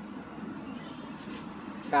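A lull with only steady, faint outdoor background noise, a low even hum without distinct events; a man's voice starts again at the very end.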